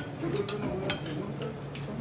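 About five sharp clicks and crackles from a charcoal kettle grill as a foil-wrapped tomahawk steak is brought onto the grate over hot coals. Faint voices talk underneath.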